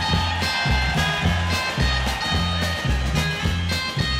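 Country band's instrumental break: electric lead guitar picking the melody over a steady two-beat bass and drum shuffle, about two bass beats a second.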